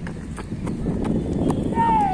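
Footsteps running on the ground close to the microphone, about three footfalls a second over a low rumble, with a person's shout starting near the end.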